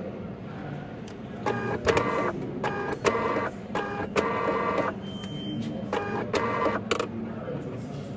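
A printer printing in a run of short, even-pitched buzzy bursts, about six in quick succession and then two more a second or so later, with a few sharp clicks between them.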